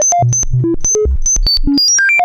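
A modular synthesizer's voltage-controlled oscillator, its pitch jumping at random several times a second across nearly its whole range, from low bass to very high notes. Each step is a short plain tone with a click at the change. The random voltage comes from a Make Noise Wogglebug patched into the oscillator's volt-per-octave input, spanning essentially the entire pitch range.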